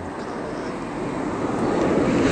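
A steady rushing noise with no distinct tones, growing gradually louder.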